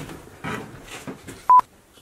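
A short, loud electronic beep, one steady pure tone lasting about a tenth of a second, about one and a half seconds in, after faint knocks and rustles; the sound drops almost to nothing right after it.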